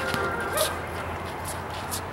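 Sounds of a pickup basketball game on a concrete court: a short shout or yelp about half a second in and a few sharp knocks of the ball or sneakers on the court, over a low steady hum.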